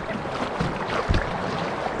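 Wind rumbling on the microphone over choppy river water washing against a kayak, with a low thump about a second in.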